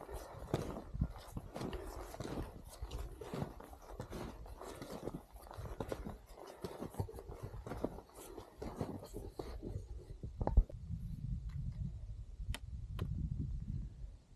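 Footsteps crunching and scuffing in deep, slushy snow on a steep climb, an uneven run of steps. In the last few seconds the steps stop, giving way to a low rumble with a few sharp clicks.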